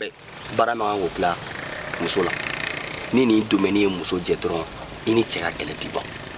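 A man speaking in short phrases, over a steady high-pitched chirring of field insects that runs on without a break.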